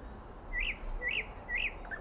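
A bird chirping three times, about half a second apart, each a short note that rises and falls in pitch.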